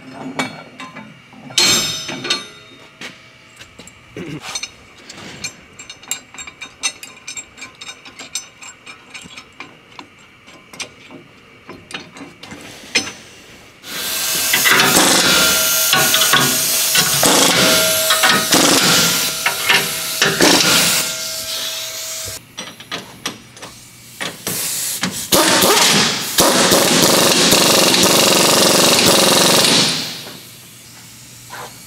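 Pneumatic impact wrench running down the new U-bolt nuts that clamp the rear axle, lift block and leaf spring together. It runs loud and continuously for about eight seconds from roughly the middle, then again for about five seconds near the end. Before it come scattered metal clinks and clicks as the nuts and socket are fitted by hand.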